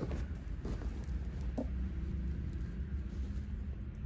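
Soft rustling of cloth trousers being lifted and turned by hand, with a few faint brushes of fabric over a steady low hum.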